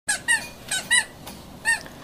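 Plastic Little Tikes Cozy Coupe ride-on toy car squeaking as it moves, five short high squeaks at uneven intervals.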